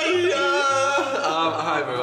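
A man singing dramatically in a sliding, wavering voice, with low bass notes underneath that change pitch a few times.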